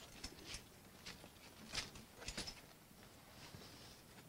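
A quiet pause with a few faint, short clicks and rustles, the clearest about two seconds in, over a low outdoor background.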